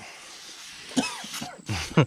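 Aerosol can of foaming oven cleaner spraying with a steady hiss, followed about a second in by a short cough-like vocal outburst.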